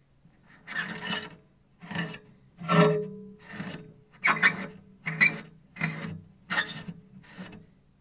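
Cello strings being rubbed hard with a cloth to scrub off caked rosin: about nine harsh scraping strokes, roughly one a second, with low string tones sounding under each stroke.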